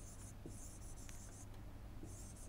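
Faint scratching of a stylus writing on a tablet, in two short spells of strokes, over a low steady hum.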